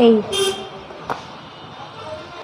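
A woman's voice ends a word at the start, then a single light click about a second in as a small cardboard box is opened by hand, over faint background hiss.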